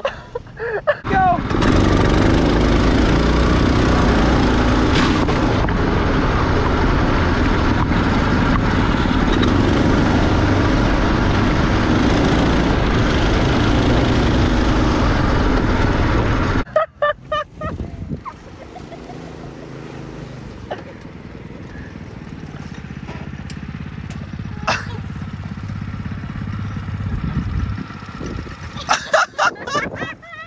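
A go-kart being driven, heard from a camera mounted on the kart: motor and wind noise loud and steady for about fifteen seconds. It then cuts off suddenly to a quieter stretch of the kart running that slowly grows louder.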